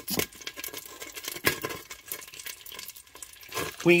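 A utensil clicking and scraping against a pot in quick irregular strokes, stirring butter and bacon grease together.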